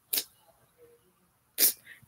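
Two short, sharp puffs of breath, like small sneezes, about a second and a half apart.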